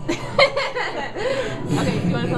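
Laughter and chuckling, with a brief louder burst about half a second in.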